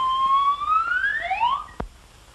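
A whistle-like musical tone sliding steadily upward in pitch for about a second and a half, ending the song number. A second, shorter upward slide joins it near the end. A sharp click follows as the film cuts.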